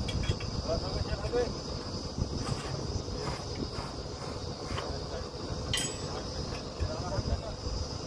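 Truck-mounted borewell drilling rig's engine running with a steady low rumble, under a steady high-pitched buzz. A short sharp clink comes about six seconds in, with low voices now and then.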